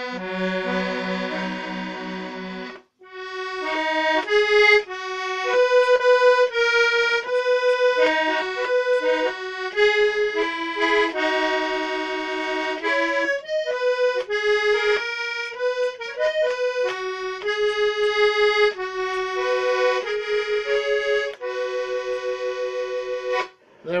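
Accordion ("the box") played solo: a melody over held chords, with a short break about three seconds in. The playing stops just before the end.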